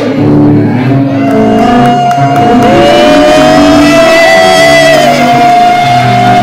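Woman singing to acoustic guitar chords; about a second in she holds one long high note for several seconds, and a second, lower voice joins it partway through.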